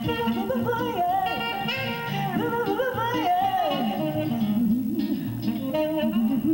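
A woman singing a slow jazz vocal line, sliding between notes, over acoustic guitar chords.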